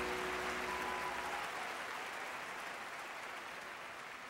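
Concert audience applauding and cheering in a large hall, slowly dying down, while a held chord from the band fades out in the first second or so.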